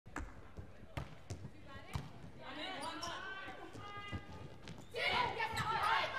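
A volleyball bounced on the hard court floor, a few sharp thuds in the first two seconds. Then several crowd voices and shouts rise in the hall, growing louder about five seconds in.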